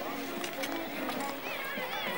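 Outdoor ice rink ambience: a babble of skaters' voices with calls rising near the end, over the scrape and click of skate blades on the ice.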